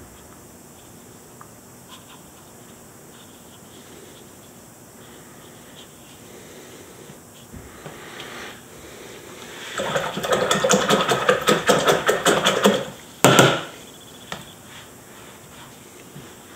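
Quiet at first, then a rapid run of light clicks and rattles for about three seconds, and one sharper knock just after: small art supplies being handled on the worktable.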